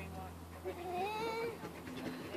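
A young child's voice making one drawn-out vocal sound, about a second long, that rises and falls in pitch, with no clear words. A steady low hum runs underneath.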